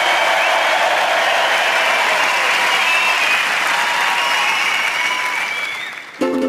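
A large theatre audience applauding, a dense steady clatter of clapping that dies away near the end.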